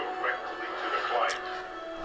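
Television episode audio playing at moderate level: faint dialogue over a sustained music score.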